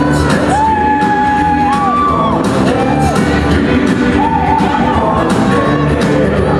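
Up-tempo jive music playing, with a sung vocal line of long held notes over a steady beat.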